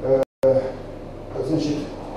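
A man's voice lecturing in Russian, with short hesitant sounds between words. A quarter of a second in, the audio cuts out completely for a moment.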